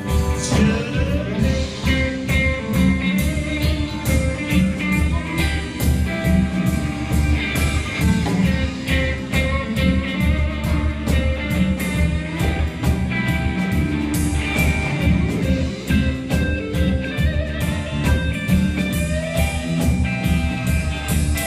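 Live band playing: electric guitars and electric bass over a drum kit keeping a steady beat.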